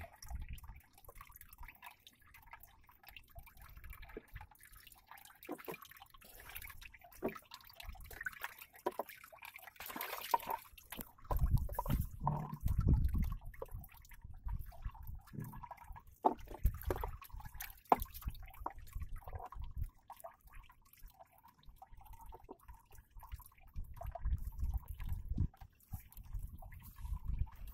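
Small waves lapping and splashing against a wooden boat's hull, with scattered drips and light knocks. There are low rumbles around the middle and again near the end.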